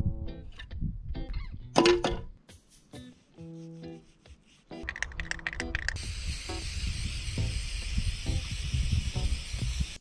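Background music, and from about six seconds in the steady hiss of a Plasti Dip aerosol can spraying onto a van's steel wheel.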